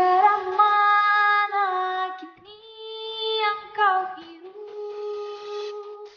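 A high voice singing a few long held notes on its own, with no instruments heard.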